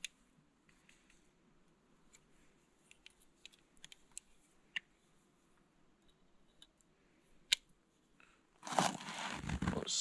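Faint, scattered clicks and ticks of thin steel snare wire and a Leatherman multitool being handled, with one sharper click late on. Near the end a louder rushing noise takes over for over a second.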